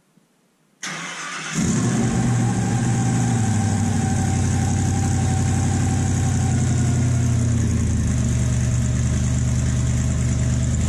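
Cammed 5.3-litre V8 in a Chevy S10, running through newly fitted custom headers and exhaust, cranked by the starter for about half a second and catching about a second and a half in. It then idles loud and steady, the idle easing slightly lower after several seconds.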